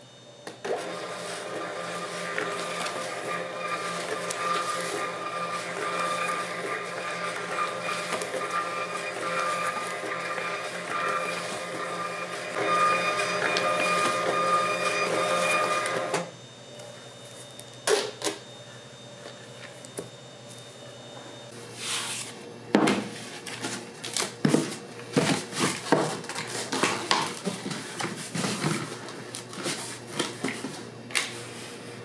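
A desktop shipping-label printer feeds and prints a run of parcel waybill labels. Its motor runs steadily for about fifteen seconds, then stops suddenly. Scattered clicks and paper rustles follow as the printed label stack is handled.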